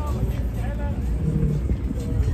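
Car engine running at low revs as a steady low rumble, with people talking over it.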